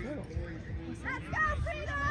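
Distant voices of spectators and players calling across the field, with one long drawn-out call starting about halfway through.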